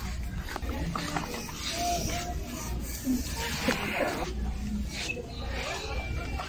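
Supermarket background noise: faint distant voices over a steady low hum, with no single sound standing out.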